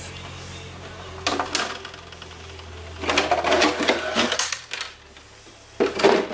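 Plastic body shell of an RC short-course truck being pulled off its mounts and set down: a few clicks about a second in, a stretch of plastic rattling and clatter around three to four seconds, and a sharp knock near the end. A steady low hum sits under the first part.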